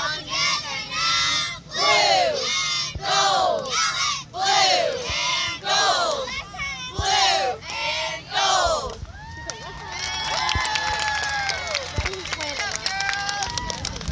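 Group of young girls shouting a cheer in unison, loud chanted words coming a little under twice a second. About nine seconds in, the chant breaks into long held yells and cheering.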